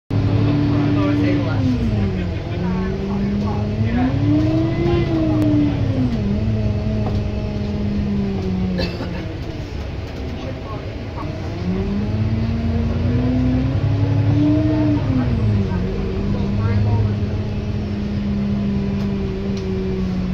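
Alexander Dennis Enviro400 MMC double-decker bus heard from the upper deck as it drives. The diesel engine's note climbs and drops back at each automatic gear change, then holds steady at cruise. It eases off for a couple of seconds around the middle, then pulls away and climbs through the gears again.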